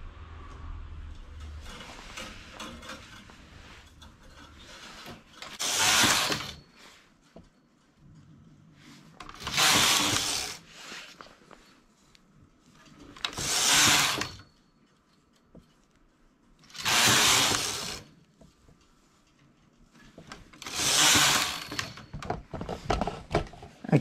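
Domestic knitting machine carriage sliding across the needle bed, five passes about a second long each and a few seconds apart, knitting short rows with the carriage set to hold. Faint handling of the needles comes between the passes.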